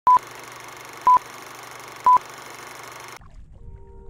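Three short, high electronic beeps, one each second, over a steady hiss that cuts off suddenly about three seconds in. Faint sustained music tones begin near the end.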